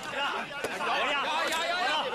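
Background chatter of a crowd of men talking over one another, with one brief click a little over half a second in.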